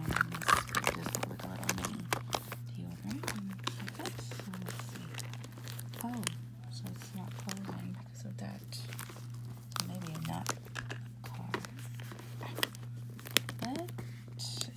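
Irregular rustling, crinkling and small clicks of items being packed into a small leather flap bag and the bag being handled, over a steady low hum.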